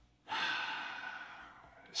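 A man's long, audible breath, close to the microphone, taken in a pause in his speech. It starts sharply about a third of a second in and fades away over about a second and a half.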